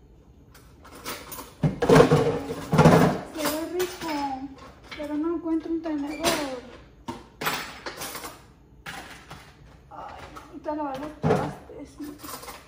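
A woman's voice talking indistinctly amid kitchen clatter. A loud burst of rattling and knocking comes about two seconds in, and sharper single knocks come around six and eleven seconds in.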